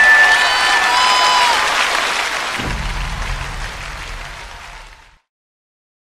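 A large audience applauding in a concert hall, the applause fading away over about five seconds and then cutting off abruptly.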